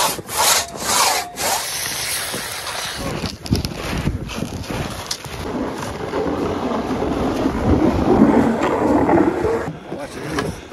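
Two-man crosscut saw rasping through a log: a few hard strokes at the start, then a long steady scraping that grows louder in the second half and stops just before the end.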